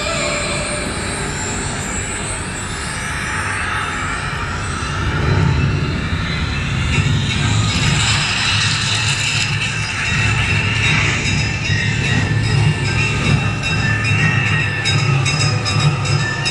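Electronic soundtrack of an outdoor projection-mapping show over loudspeakers: sweeping whooshes, then a pulsing low beat from about five seconds in, with quick ticking near the end.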